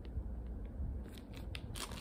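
A clear plastic zip-top bag holding a wax melt tile being handled: scattered light crinkles and clicks of the plastic.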